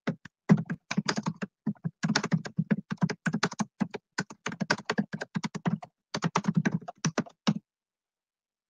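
Typing on a computer keyboard: quick runs of key clicks with short pauses between them, stopping near the end.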